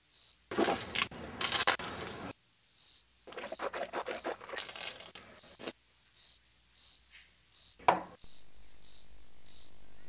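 Crickets chirping in a steady, quick series of short high chirps, two to three a second. Two longer stretches of noise come in the first half, and a single sharp knock is heard near the end.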